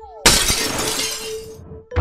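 Glass shattering sound effect, sudden and loud about a quarter second in and fading over about a second, over background music with a steady held note.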